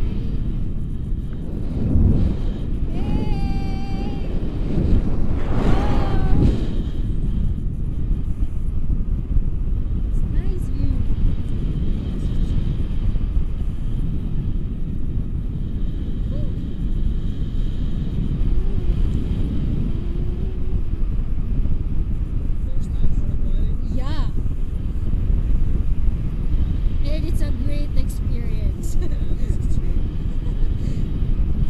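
Steady low wind rumble on the camera's microphone from the airflow of a paraglider in flight. Brief voice sounds break through about three and six seconds in.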